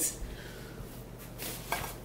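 Soft handling sounds as a fabric grocery tote is rummaged and a glass jar is lifted out, with a couple of faint knocks near the end.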